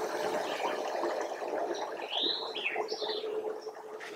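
Steady rush of a woodland creek, with a short bird call of a few sweeping high notes about two seconds in.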